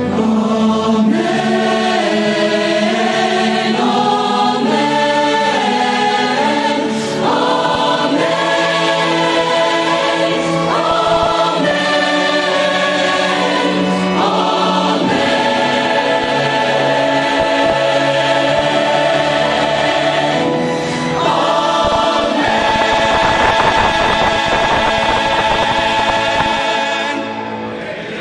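Large mixed choir and vocal ensemble singing a worship song, holding long chords that change every second or two, and fading out near the end.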